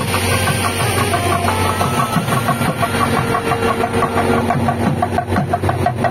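Procession band music: a saxophone plays a melody of held notes over a steady low drone, with a barrel drum beating a rhythm that grows more distinct toward the end.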